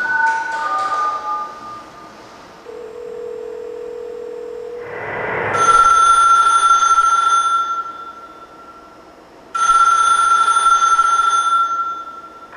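A telephone ringing twice, each ring lasting about two seconds, the first starting about five and a half seconds in. Before it, the tail of a mallet-like melody fades out, a steady low tone holds for about two seconds, and a rising swell of noise leads into the first ring.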